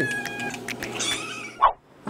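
Several house cats meowing over one another; the calls fade after about half a second, and one short meow comes near the end.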